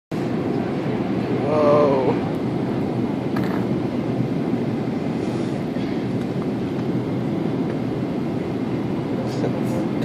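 Steady rumble of engine and airflow noise inside an airliner cabin during its descent, with a brief voice about one and a half seconds in.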